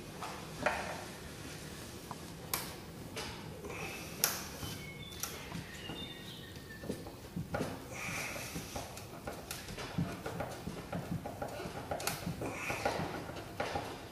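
Scattered light clicks, knocks and scrapes of hands working a screw into the wooden frame that holds an acrylic window on a wooden beehive box, with a few brief squeaks about five to six seconds in.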